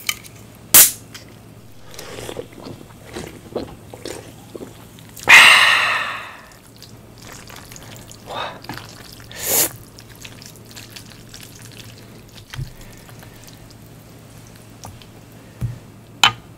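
Aluminium drink can opened close to the microphone: a sharp click near the start, then about five seconds in a loud burst of fizzing that fades away over about a second. Softer bursts and small sticky sounds follow as cheesy noodles are lifted.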